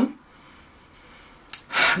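A short quiet pause, then a small click and a quick, sharp intake of breath near the end.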